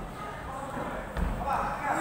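A judoka landing on the tatami mat with a dull thud a little over a second in, then several voices shouting.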